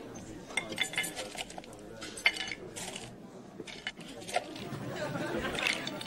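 Restaurant dining-room sound: a low murmur of diners' chatter with sharp clinks of cutlery, china and oyster shells against the platter, the loudest clink a little over two seconds in, and a busier stretch of clatter near the end.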